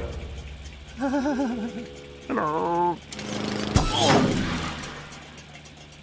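Wordless cartoon voice sounds: a wavering, trembling hum about a second in, then a short note that drops and holds, followed by a sharp thunk and a falling, breathy sound.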